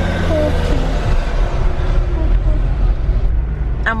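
A car's engine and tyre noise heard from inside the cabin as it drives off slowly from the ferry check-in booth: a steady low rumble with a low hum over about the first second, and faint voices underneath.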